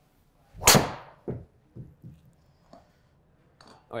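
Cobra Darkspeed X driver striking a golf ball off the tee at about 104 mph clubhead speed: one sharp, loud impact about 0.7 s in, ringing off briefly. A few faint knocks follow over the next two seconds.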